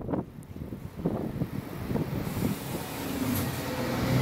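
Scania Interlink K410 coach's six-cylinder diesel engine pulling away and passing close by, its sound building steadily, with a steady hiss joining in about halfway through.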